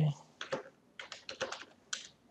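Computer keyboard typing: a quick, uneven run of about ten light keystrokes as a short word is typed.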